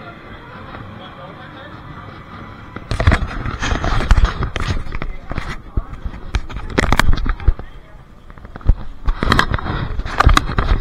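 Handling noise from a carried camera: irregular clusters of knocks, scrapes and rubbing crackle on the microphone, starting about three seconds in after a quieter stretch of background.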